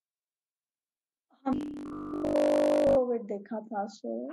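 Video-call audio: over a second of dead silence, then a harsh, steady buzzing tone for about a second and a half, the loudest sound here, cut off as a person starts talking.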